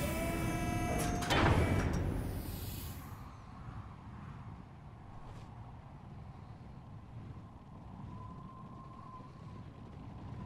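Sound effects from an animated war scene: a couple of sharp bangs with a ringing tone in the first two seconds, then a faint low rumble with a thin held tone near the end.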